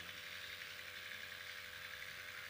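Faint, steady background hum and hiss with no speech: a lull in which only constant room and sound-system noise is heard.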